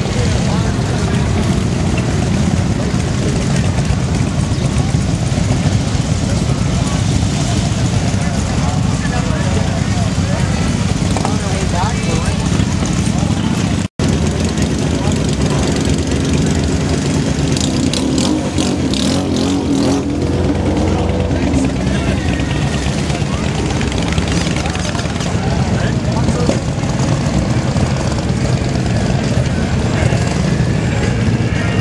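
Cruiser and touring motorcycle engines rumbling steadily as bikes ride slowly past through a crowded street, under the chatter of a large crowd. The sound cuts out for an instant about halfway through.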